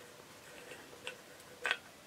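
Faint ticks of an old brass lamp housing being unscrewed by hand on its threads, with one sharper click near the end.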